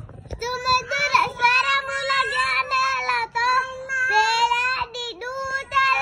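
A young girl singing in a high, clear voice, holding long notes with a few brief breaks and small dips in pitch.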